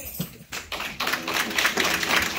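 Audience clapping after the song ends. The clapping starts about half a second in and grows denser after a second.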